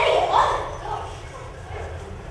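A stage actor's voice: a short, loud, high exclamation rising in pitch in the first half second, then quieter fragments of voice.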